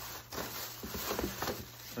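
Plastic packaging bags rustling and crinkling as they are handled and lifted out of a cardboard box, in irregular bursts with small clicks.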